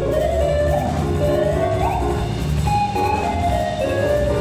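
Live jazz: an electric guitar solo on a semi-hollow electric guitar, a single melodic line with a few slides between notes, backed by double bass and a drum kit with light cymbal playing.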